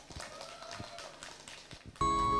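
A quiet pause of faint open-air stage ambience with scattered light clicks and taps and a faint held tone.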